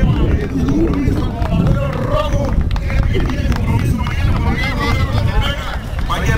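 Speech: men's voices talking over a steady low rumble.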